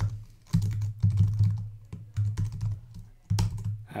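Typing on a computer keyboard: several quick runs of key clicks with short pauses between them.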